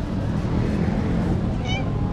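A street cat gives one short, high-pitched meow near the end, over a steady low rumble of street background noise.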